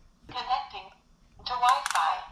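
Short spoken prompts from the light-bulb security camera's small built-in speaker, thin and tinny, as it reports its setup progress after reading the QR code. A few sharp clicks near the end.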